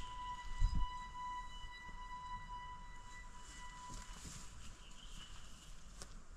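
A quiet, held high electronic tone, a sustained note of background music, that fades out about four seconds in, over a low rumble with a single bump about half a second in.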